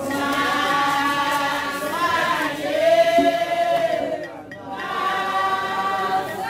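A group of voices singing a Vodou ceremonial chant together, holding long notes, with a brief break a little after four seconds before the singing resumes.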